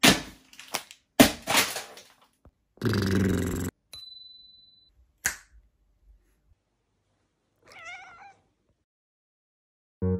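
A series of separate found sounds: a cardboard box struck as a kick drum, several thumps in the first two seconds, then a short noisy burst about three seconds in and a single finger click about five seconds in. Near the end a cat gives one brief, wavering meow, fainter than the thumps.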